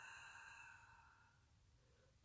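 A long breath blown out through pursed lips, a soft breathy hiss that fades away over about a second and a half. It is the final deep exhale of a paced breathing exercise.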